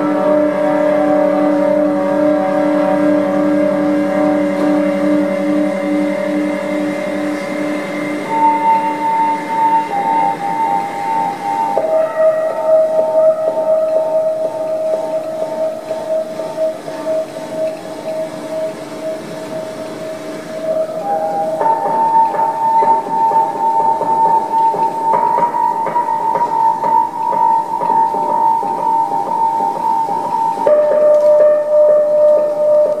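Live ambient drone music from an electric guitar run through effects: layered, sustained tones with a slight pulsing, the chord shifting slowly to new, higher pitches several times.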